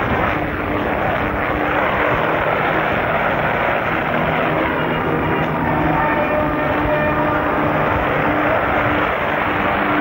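Steady wind rushing over the microphone, with music playing underneath in short held notes.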